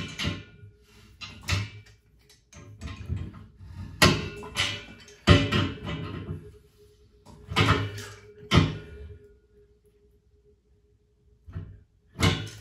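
Metal pliers knocking and clinking against a chrome radiator valve as it is tightened a turn at a time: about six sharp metallic knocks with a short ring, spaced irregularly, then quiet. The valve connection is being tightened because it was loose and leaking.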